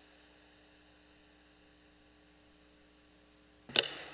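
Faint, steady electrical mains hum in a near-quiet room. Near the end come a few short knocks, handling noise picked up by the podium microphone.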